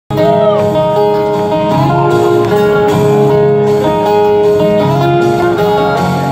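Live band playing a song, acoustic guitar to the fore in a steady, full band sound.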